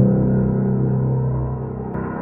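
Water Piano virtual instrument (samples of a water-filled grand piano) holding a low chord struck just before. The chord rings steadily and slowly fades.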